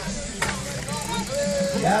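Soft voices and chatter from people standing close by, with one short sharp click about half a second in, then a man's brief question near the end.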